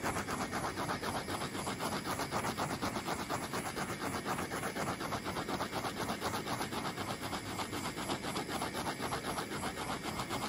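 Handheld torch flame hissing steadily with a fast, even flutter as it is played over a spinning epoxy tumbler, heating the thermochromatic coat.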